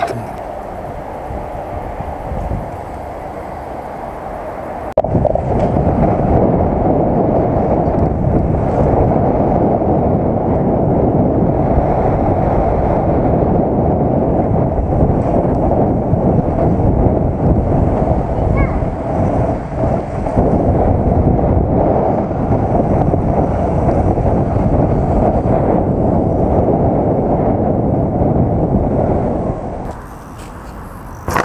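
Loud rumble and wind buffeting on a helmet-mounted action camera's microphone while a mountain bike is ridden, on a pump track for most of it. It is quieter at first and gets much louder about five seconds in.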